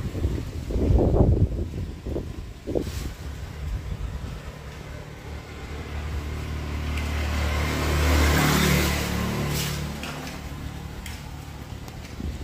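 A motor vehicle passing on the road. Its engine builds over several seconds, is loudest about eight and a half seconds in, then fades away.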